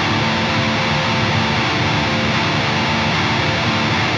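Heavily distorted electric guitar fast-strumming a black metal riff on an E power chord and its shifted shapes, in a relentless down-down-up-down picking rhythm. It rings continuously at an even volume and cuts off shortly after the end.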